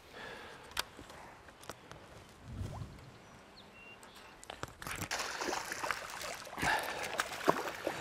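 A few faint clicks for the first few seconds, then water splashing and sloshing over the last three seconds as a hooked bass thrashes at the surface.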